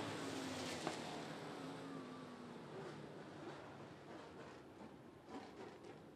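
Dirt-track race car engines running at a distance, slowly fading as the cars move away down the track, with a short click just under a second in.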